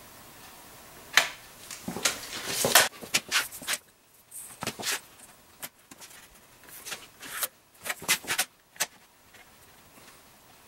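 Measuring and marking tools being handled against a steel bar: a rattling rush that stops abruptly, like a tape measure blade retracting, then scattered sharp clicks and short scrapes as a steel rule is set down and moved along the steel.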